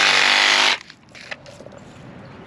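Reciprocating saw blade cutting through a tree branch, loud and steady, then stopping suddenly about three-quarters of a second in.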